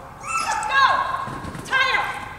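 Dog barking excitedly during an agility run: high-pitched yelping barks falling in pitch, a quick cluster in the first second and another just before the end.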